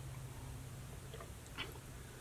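Faint swallowing as a man drinks water from a glass: a couple of soft gulps in the second half, over a low steady hum.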